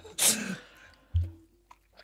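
A person sneezing once, a short noisy burst, followed about a second later by a soft low thump.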